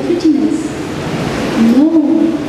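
A girl's voice through a handheld stage microphone, in drawn-out phrases with long held pitches, broken by a pause of about a second in the middle.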